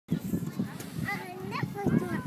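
Indistinct voices talking, over low uneven thumps.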